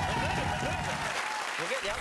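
Studio audience applauding and cheering. One long held whoop stands out over the clapping for the first second and a half.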